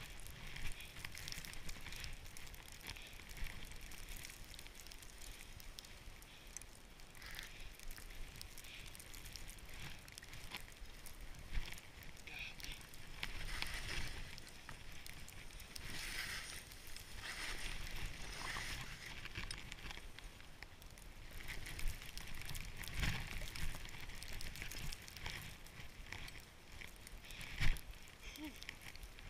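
Skis sliding through deep snow, hissing in repeated bursts as the skier turns down the slope, over a steady rumble of wind on the body-mounted camera's microphone. A few sharp knocks cut through, the loudest near the end.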